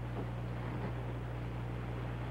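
Steady low hum with an even hiss on an old television broadcast soundtrack, unchanging and without speech.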